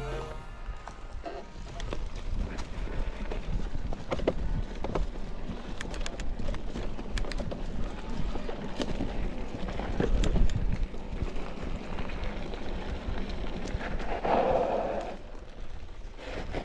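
Mountain bike ridden over a rough dirt trail: the tyres crunch over leaf litter and roots, and the frame and chain rattle in quick, irregular knocks over a steady rumble of rolling noise.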